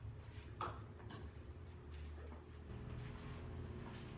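Faint clicks and knocks of kitchenware being handled, two light ones about half a second and a second in, over a low steady hum.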